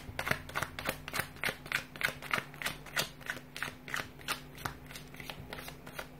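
A deck of tarot cards being shuffled by hand: a steady run of short card slaps, about three a second.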